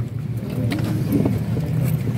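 A motor vehicle's engine running, a steady low rumble that grows a little louder about half a second in.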